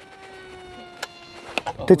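Small electric motor and propeller of an Easy Trainer 800 RC mini glider in flight, a steady buzzing whine that sinks slightly in pitch after about a second. A single sharp click comes about a second in.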